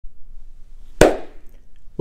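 A single sharp clap of hands brought together, about a second in, with a brief echo as it dies away.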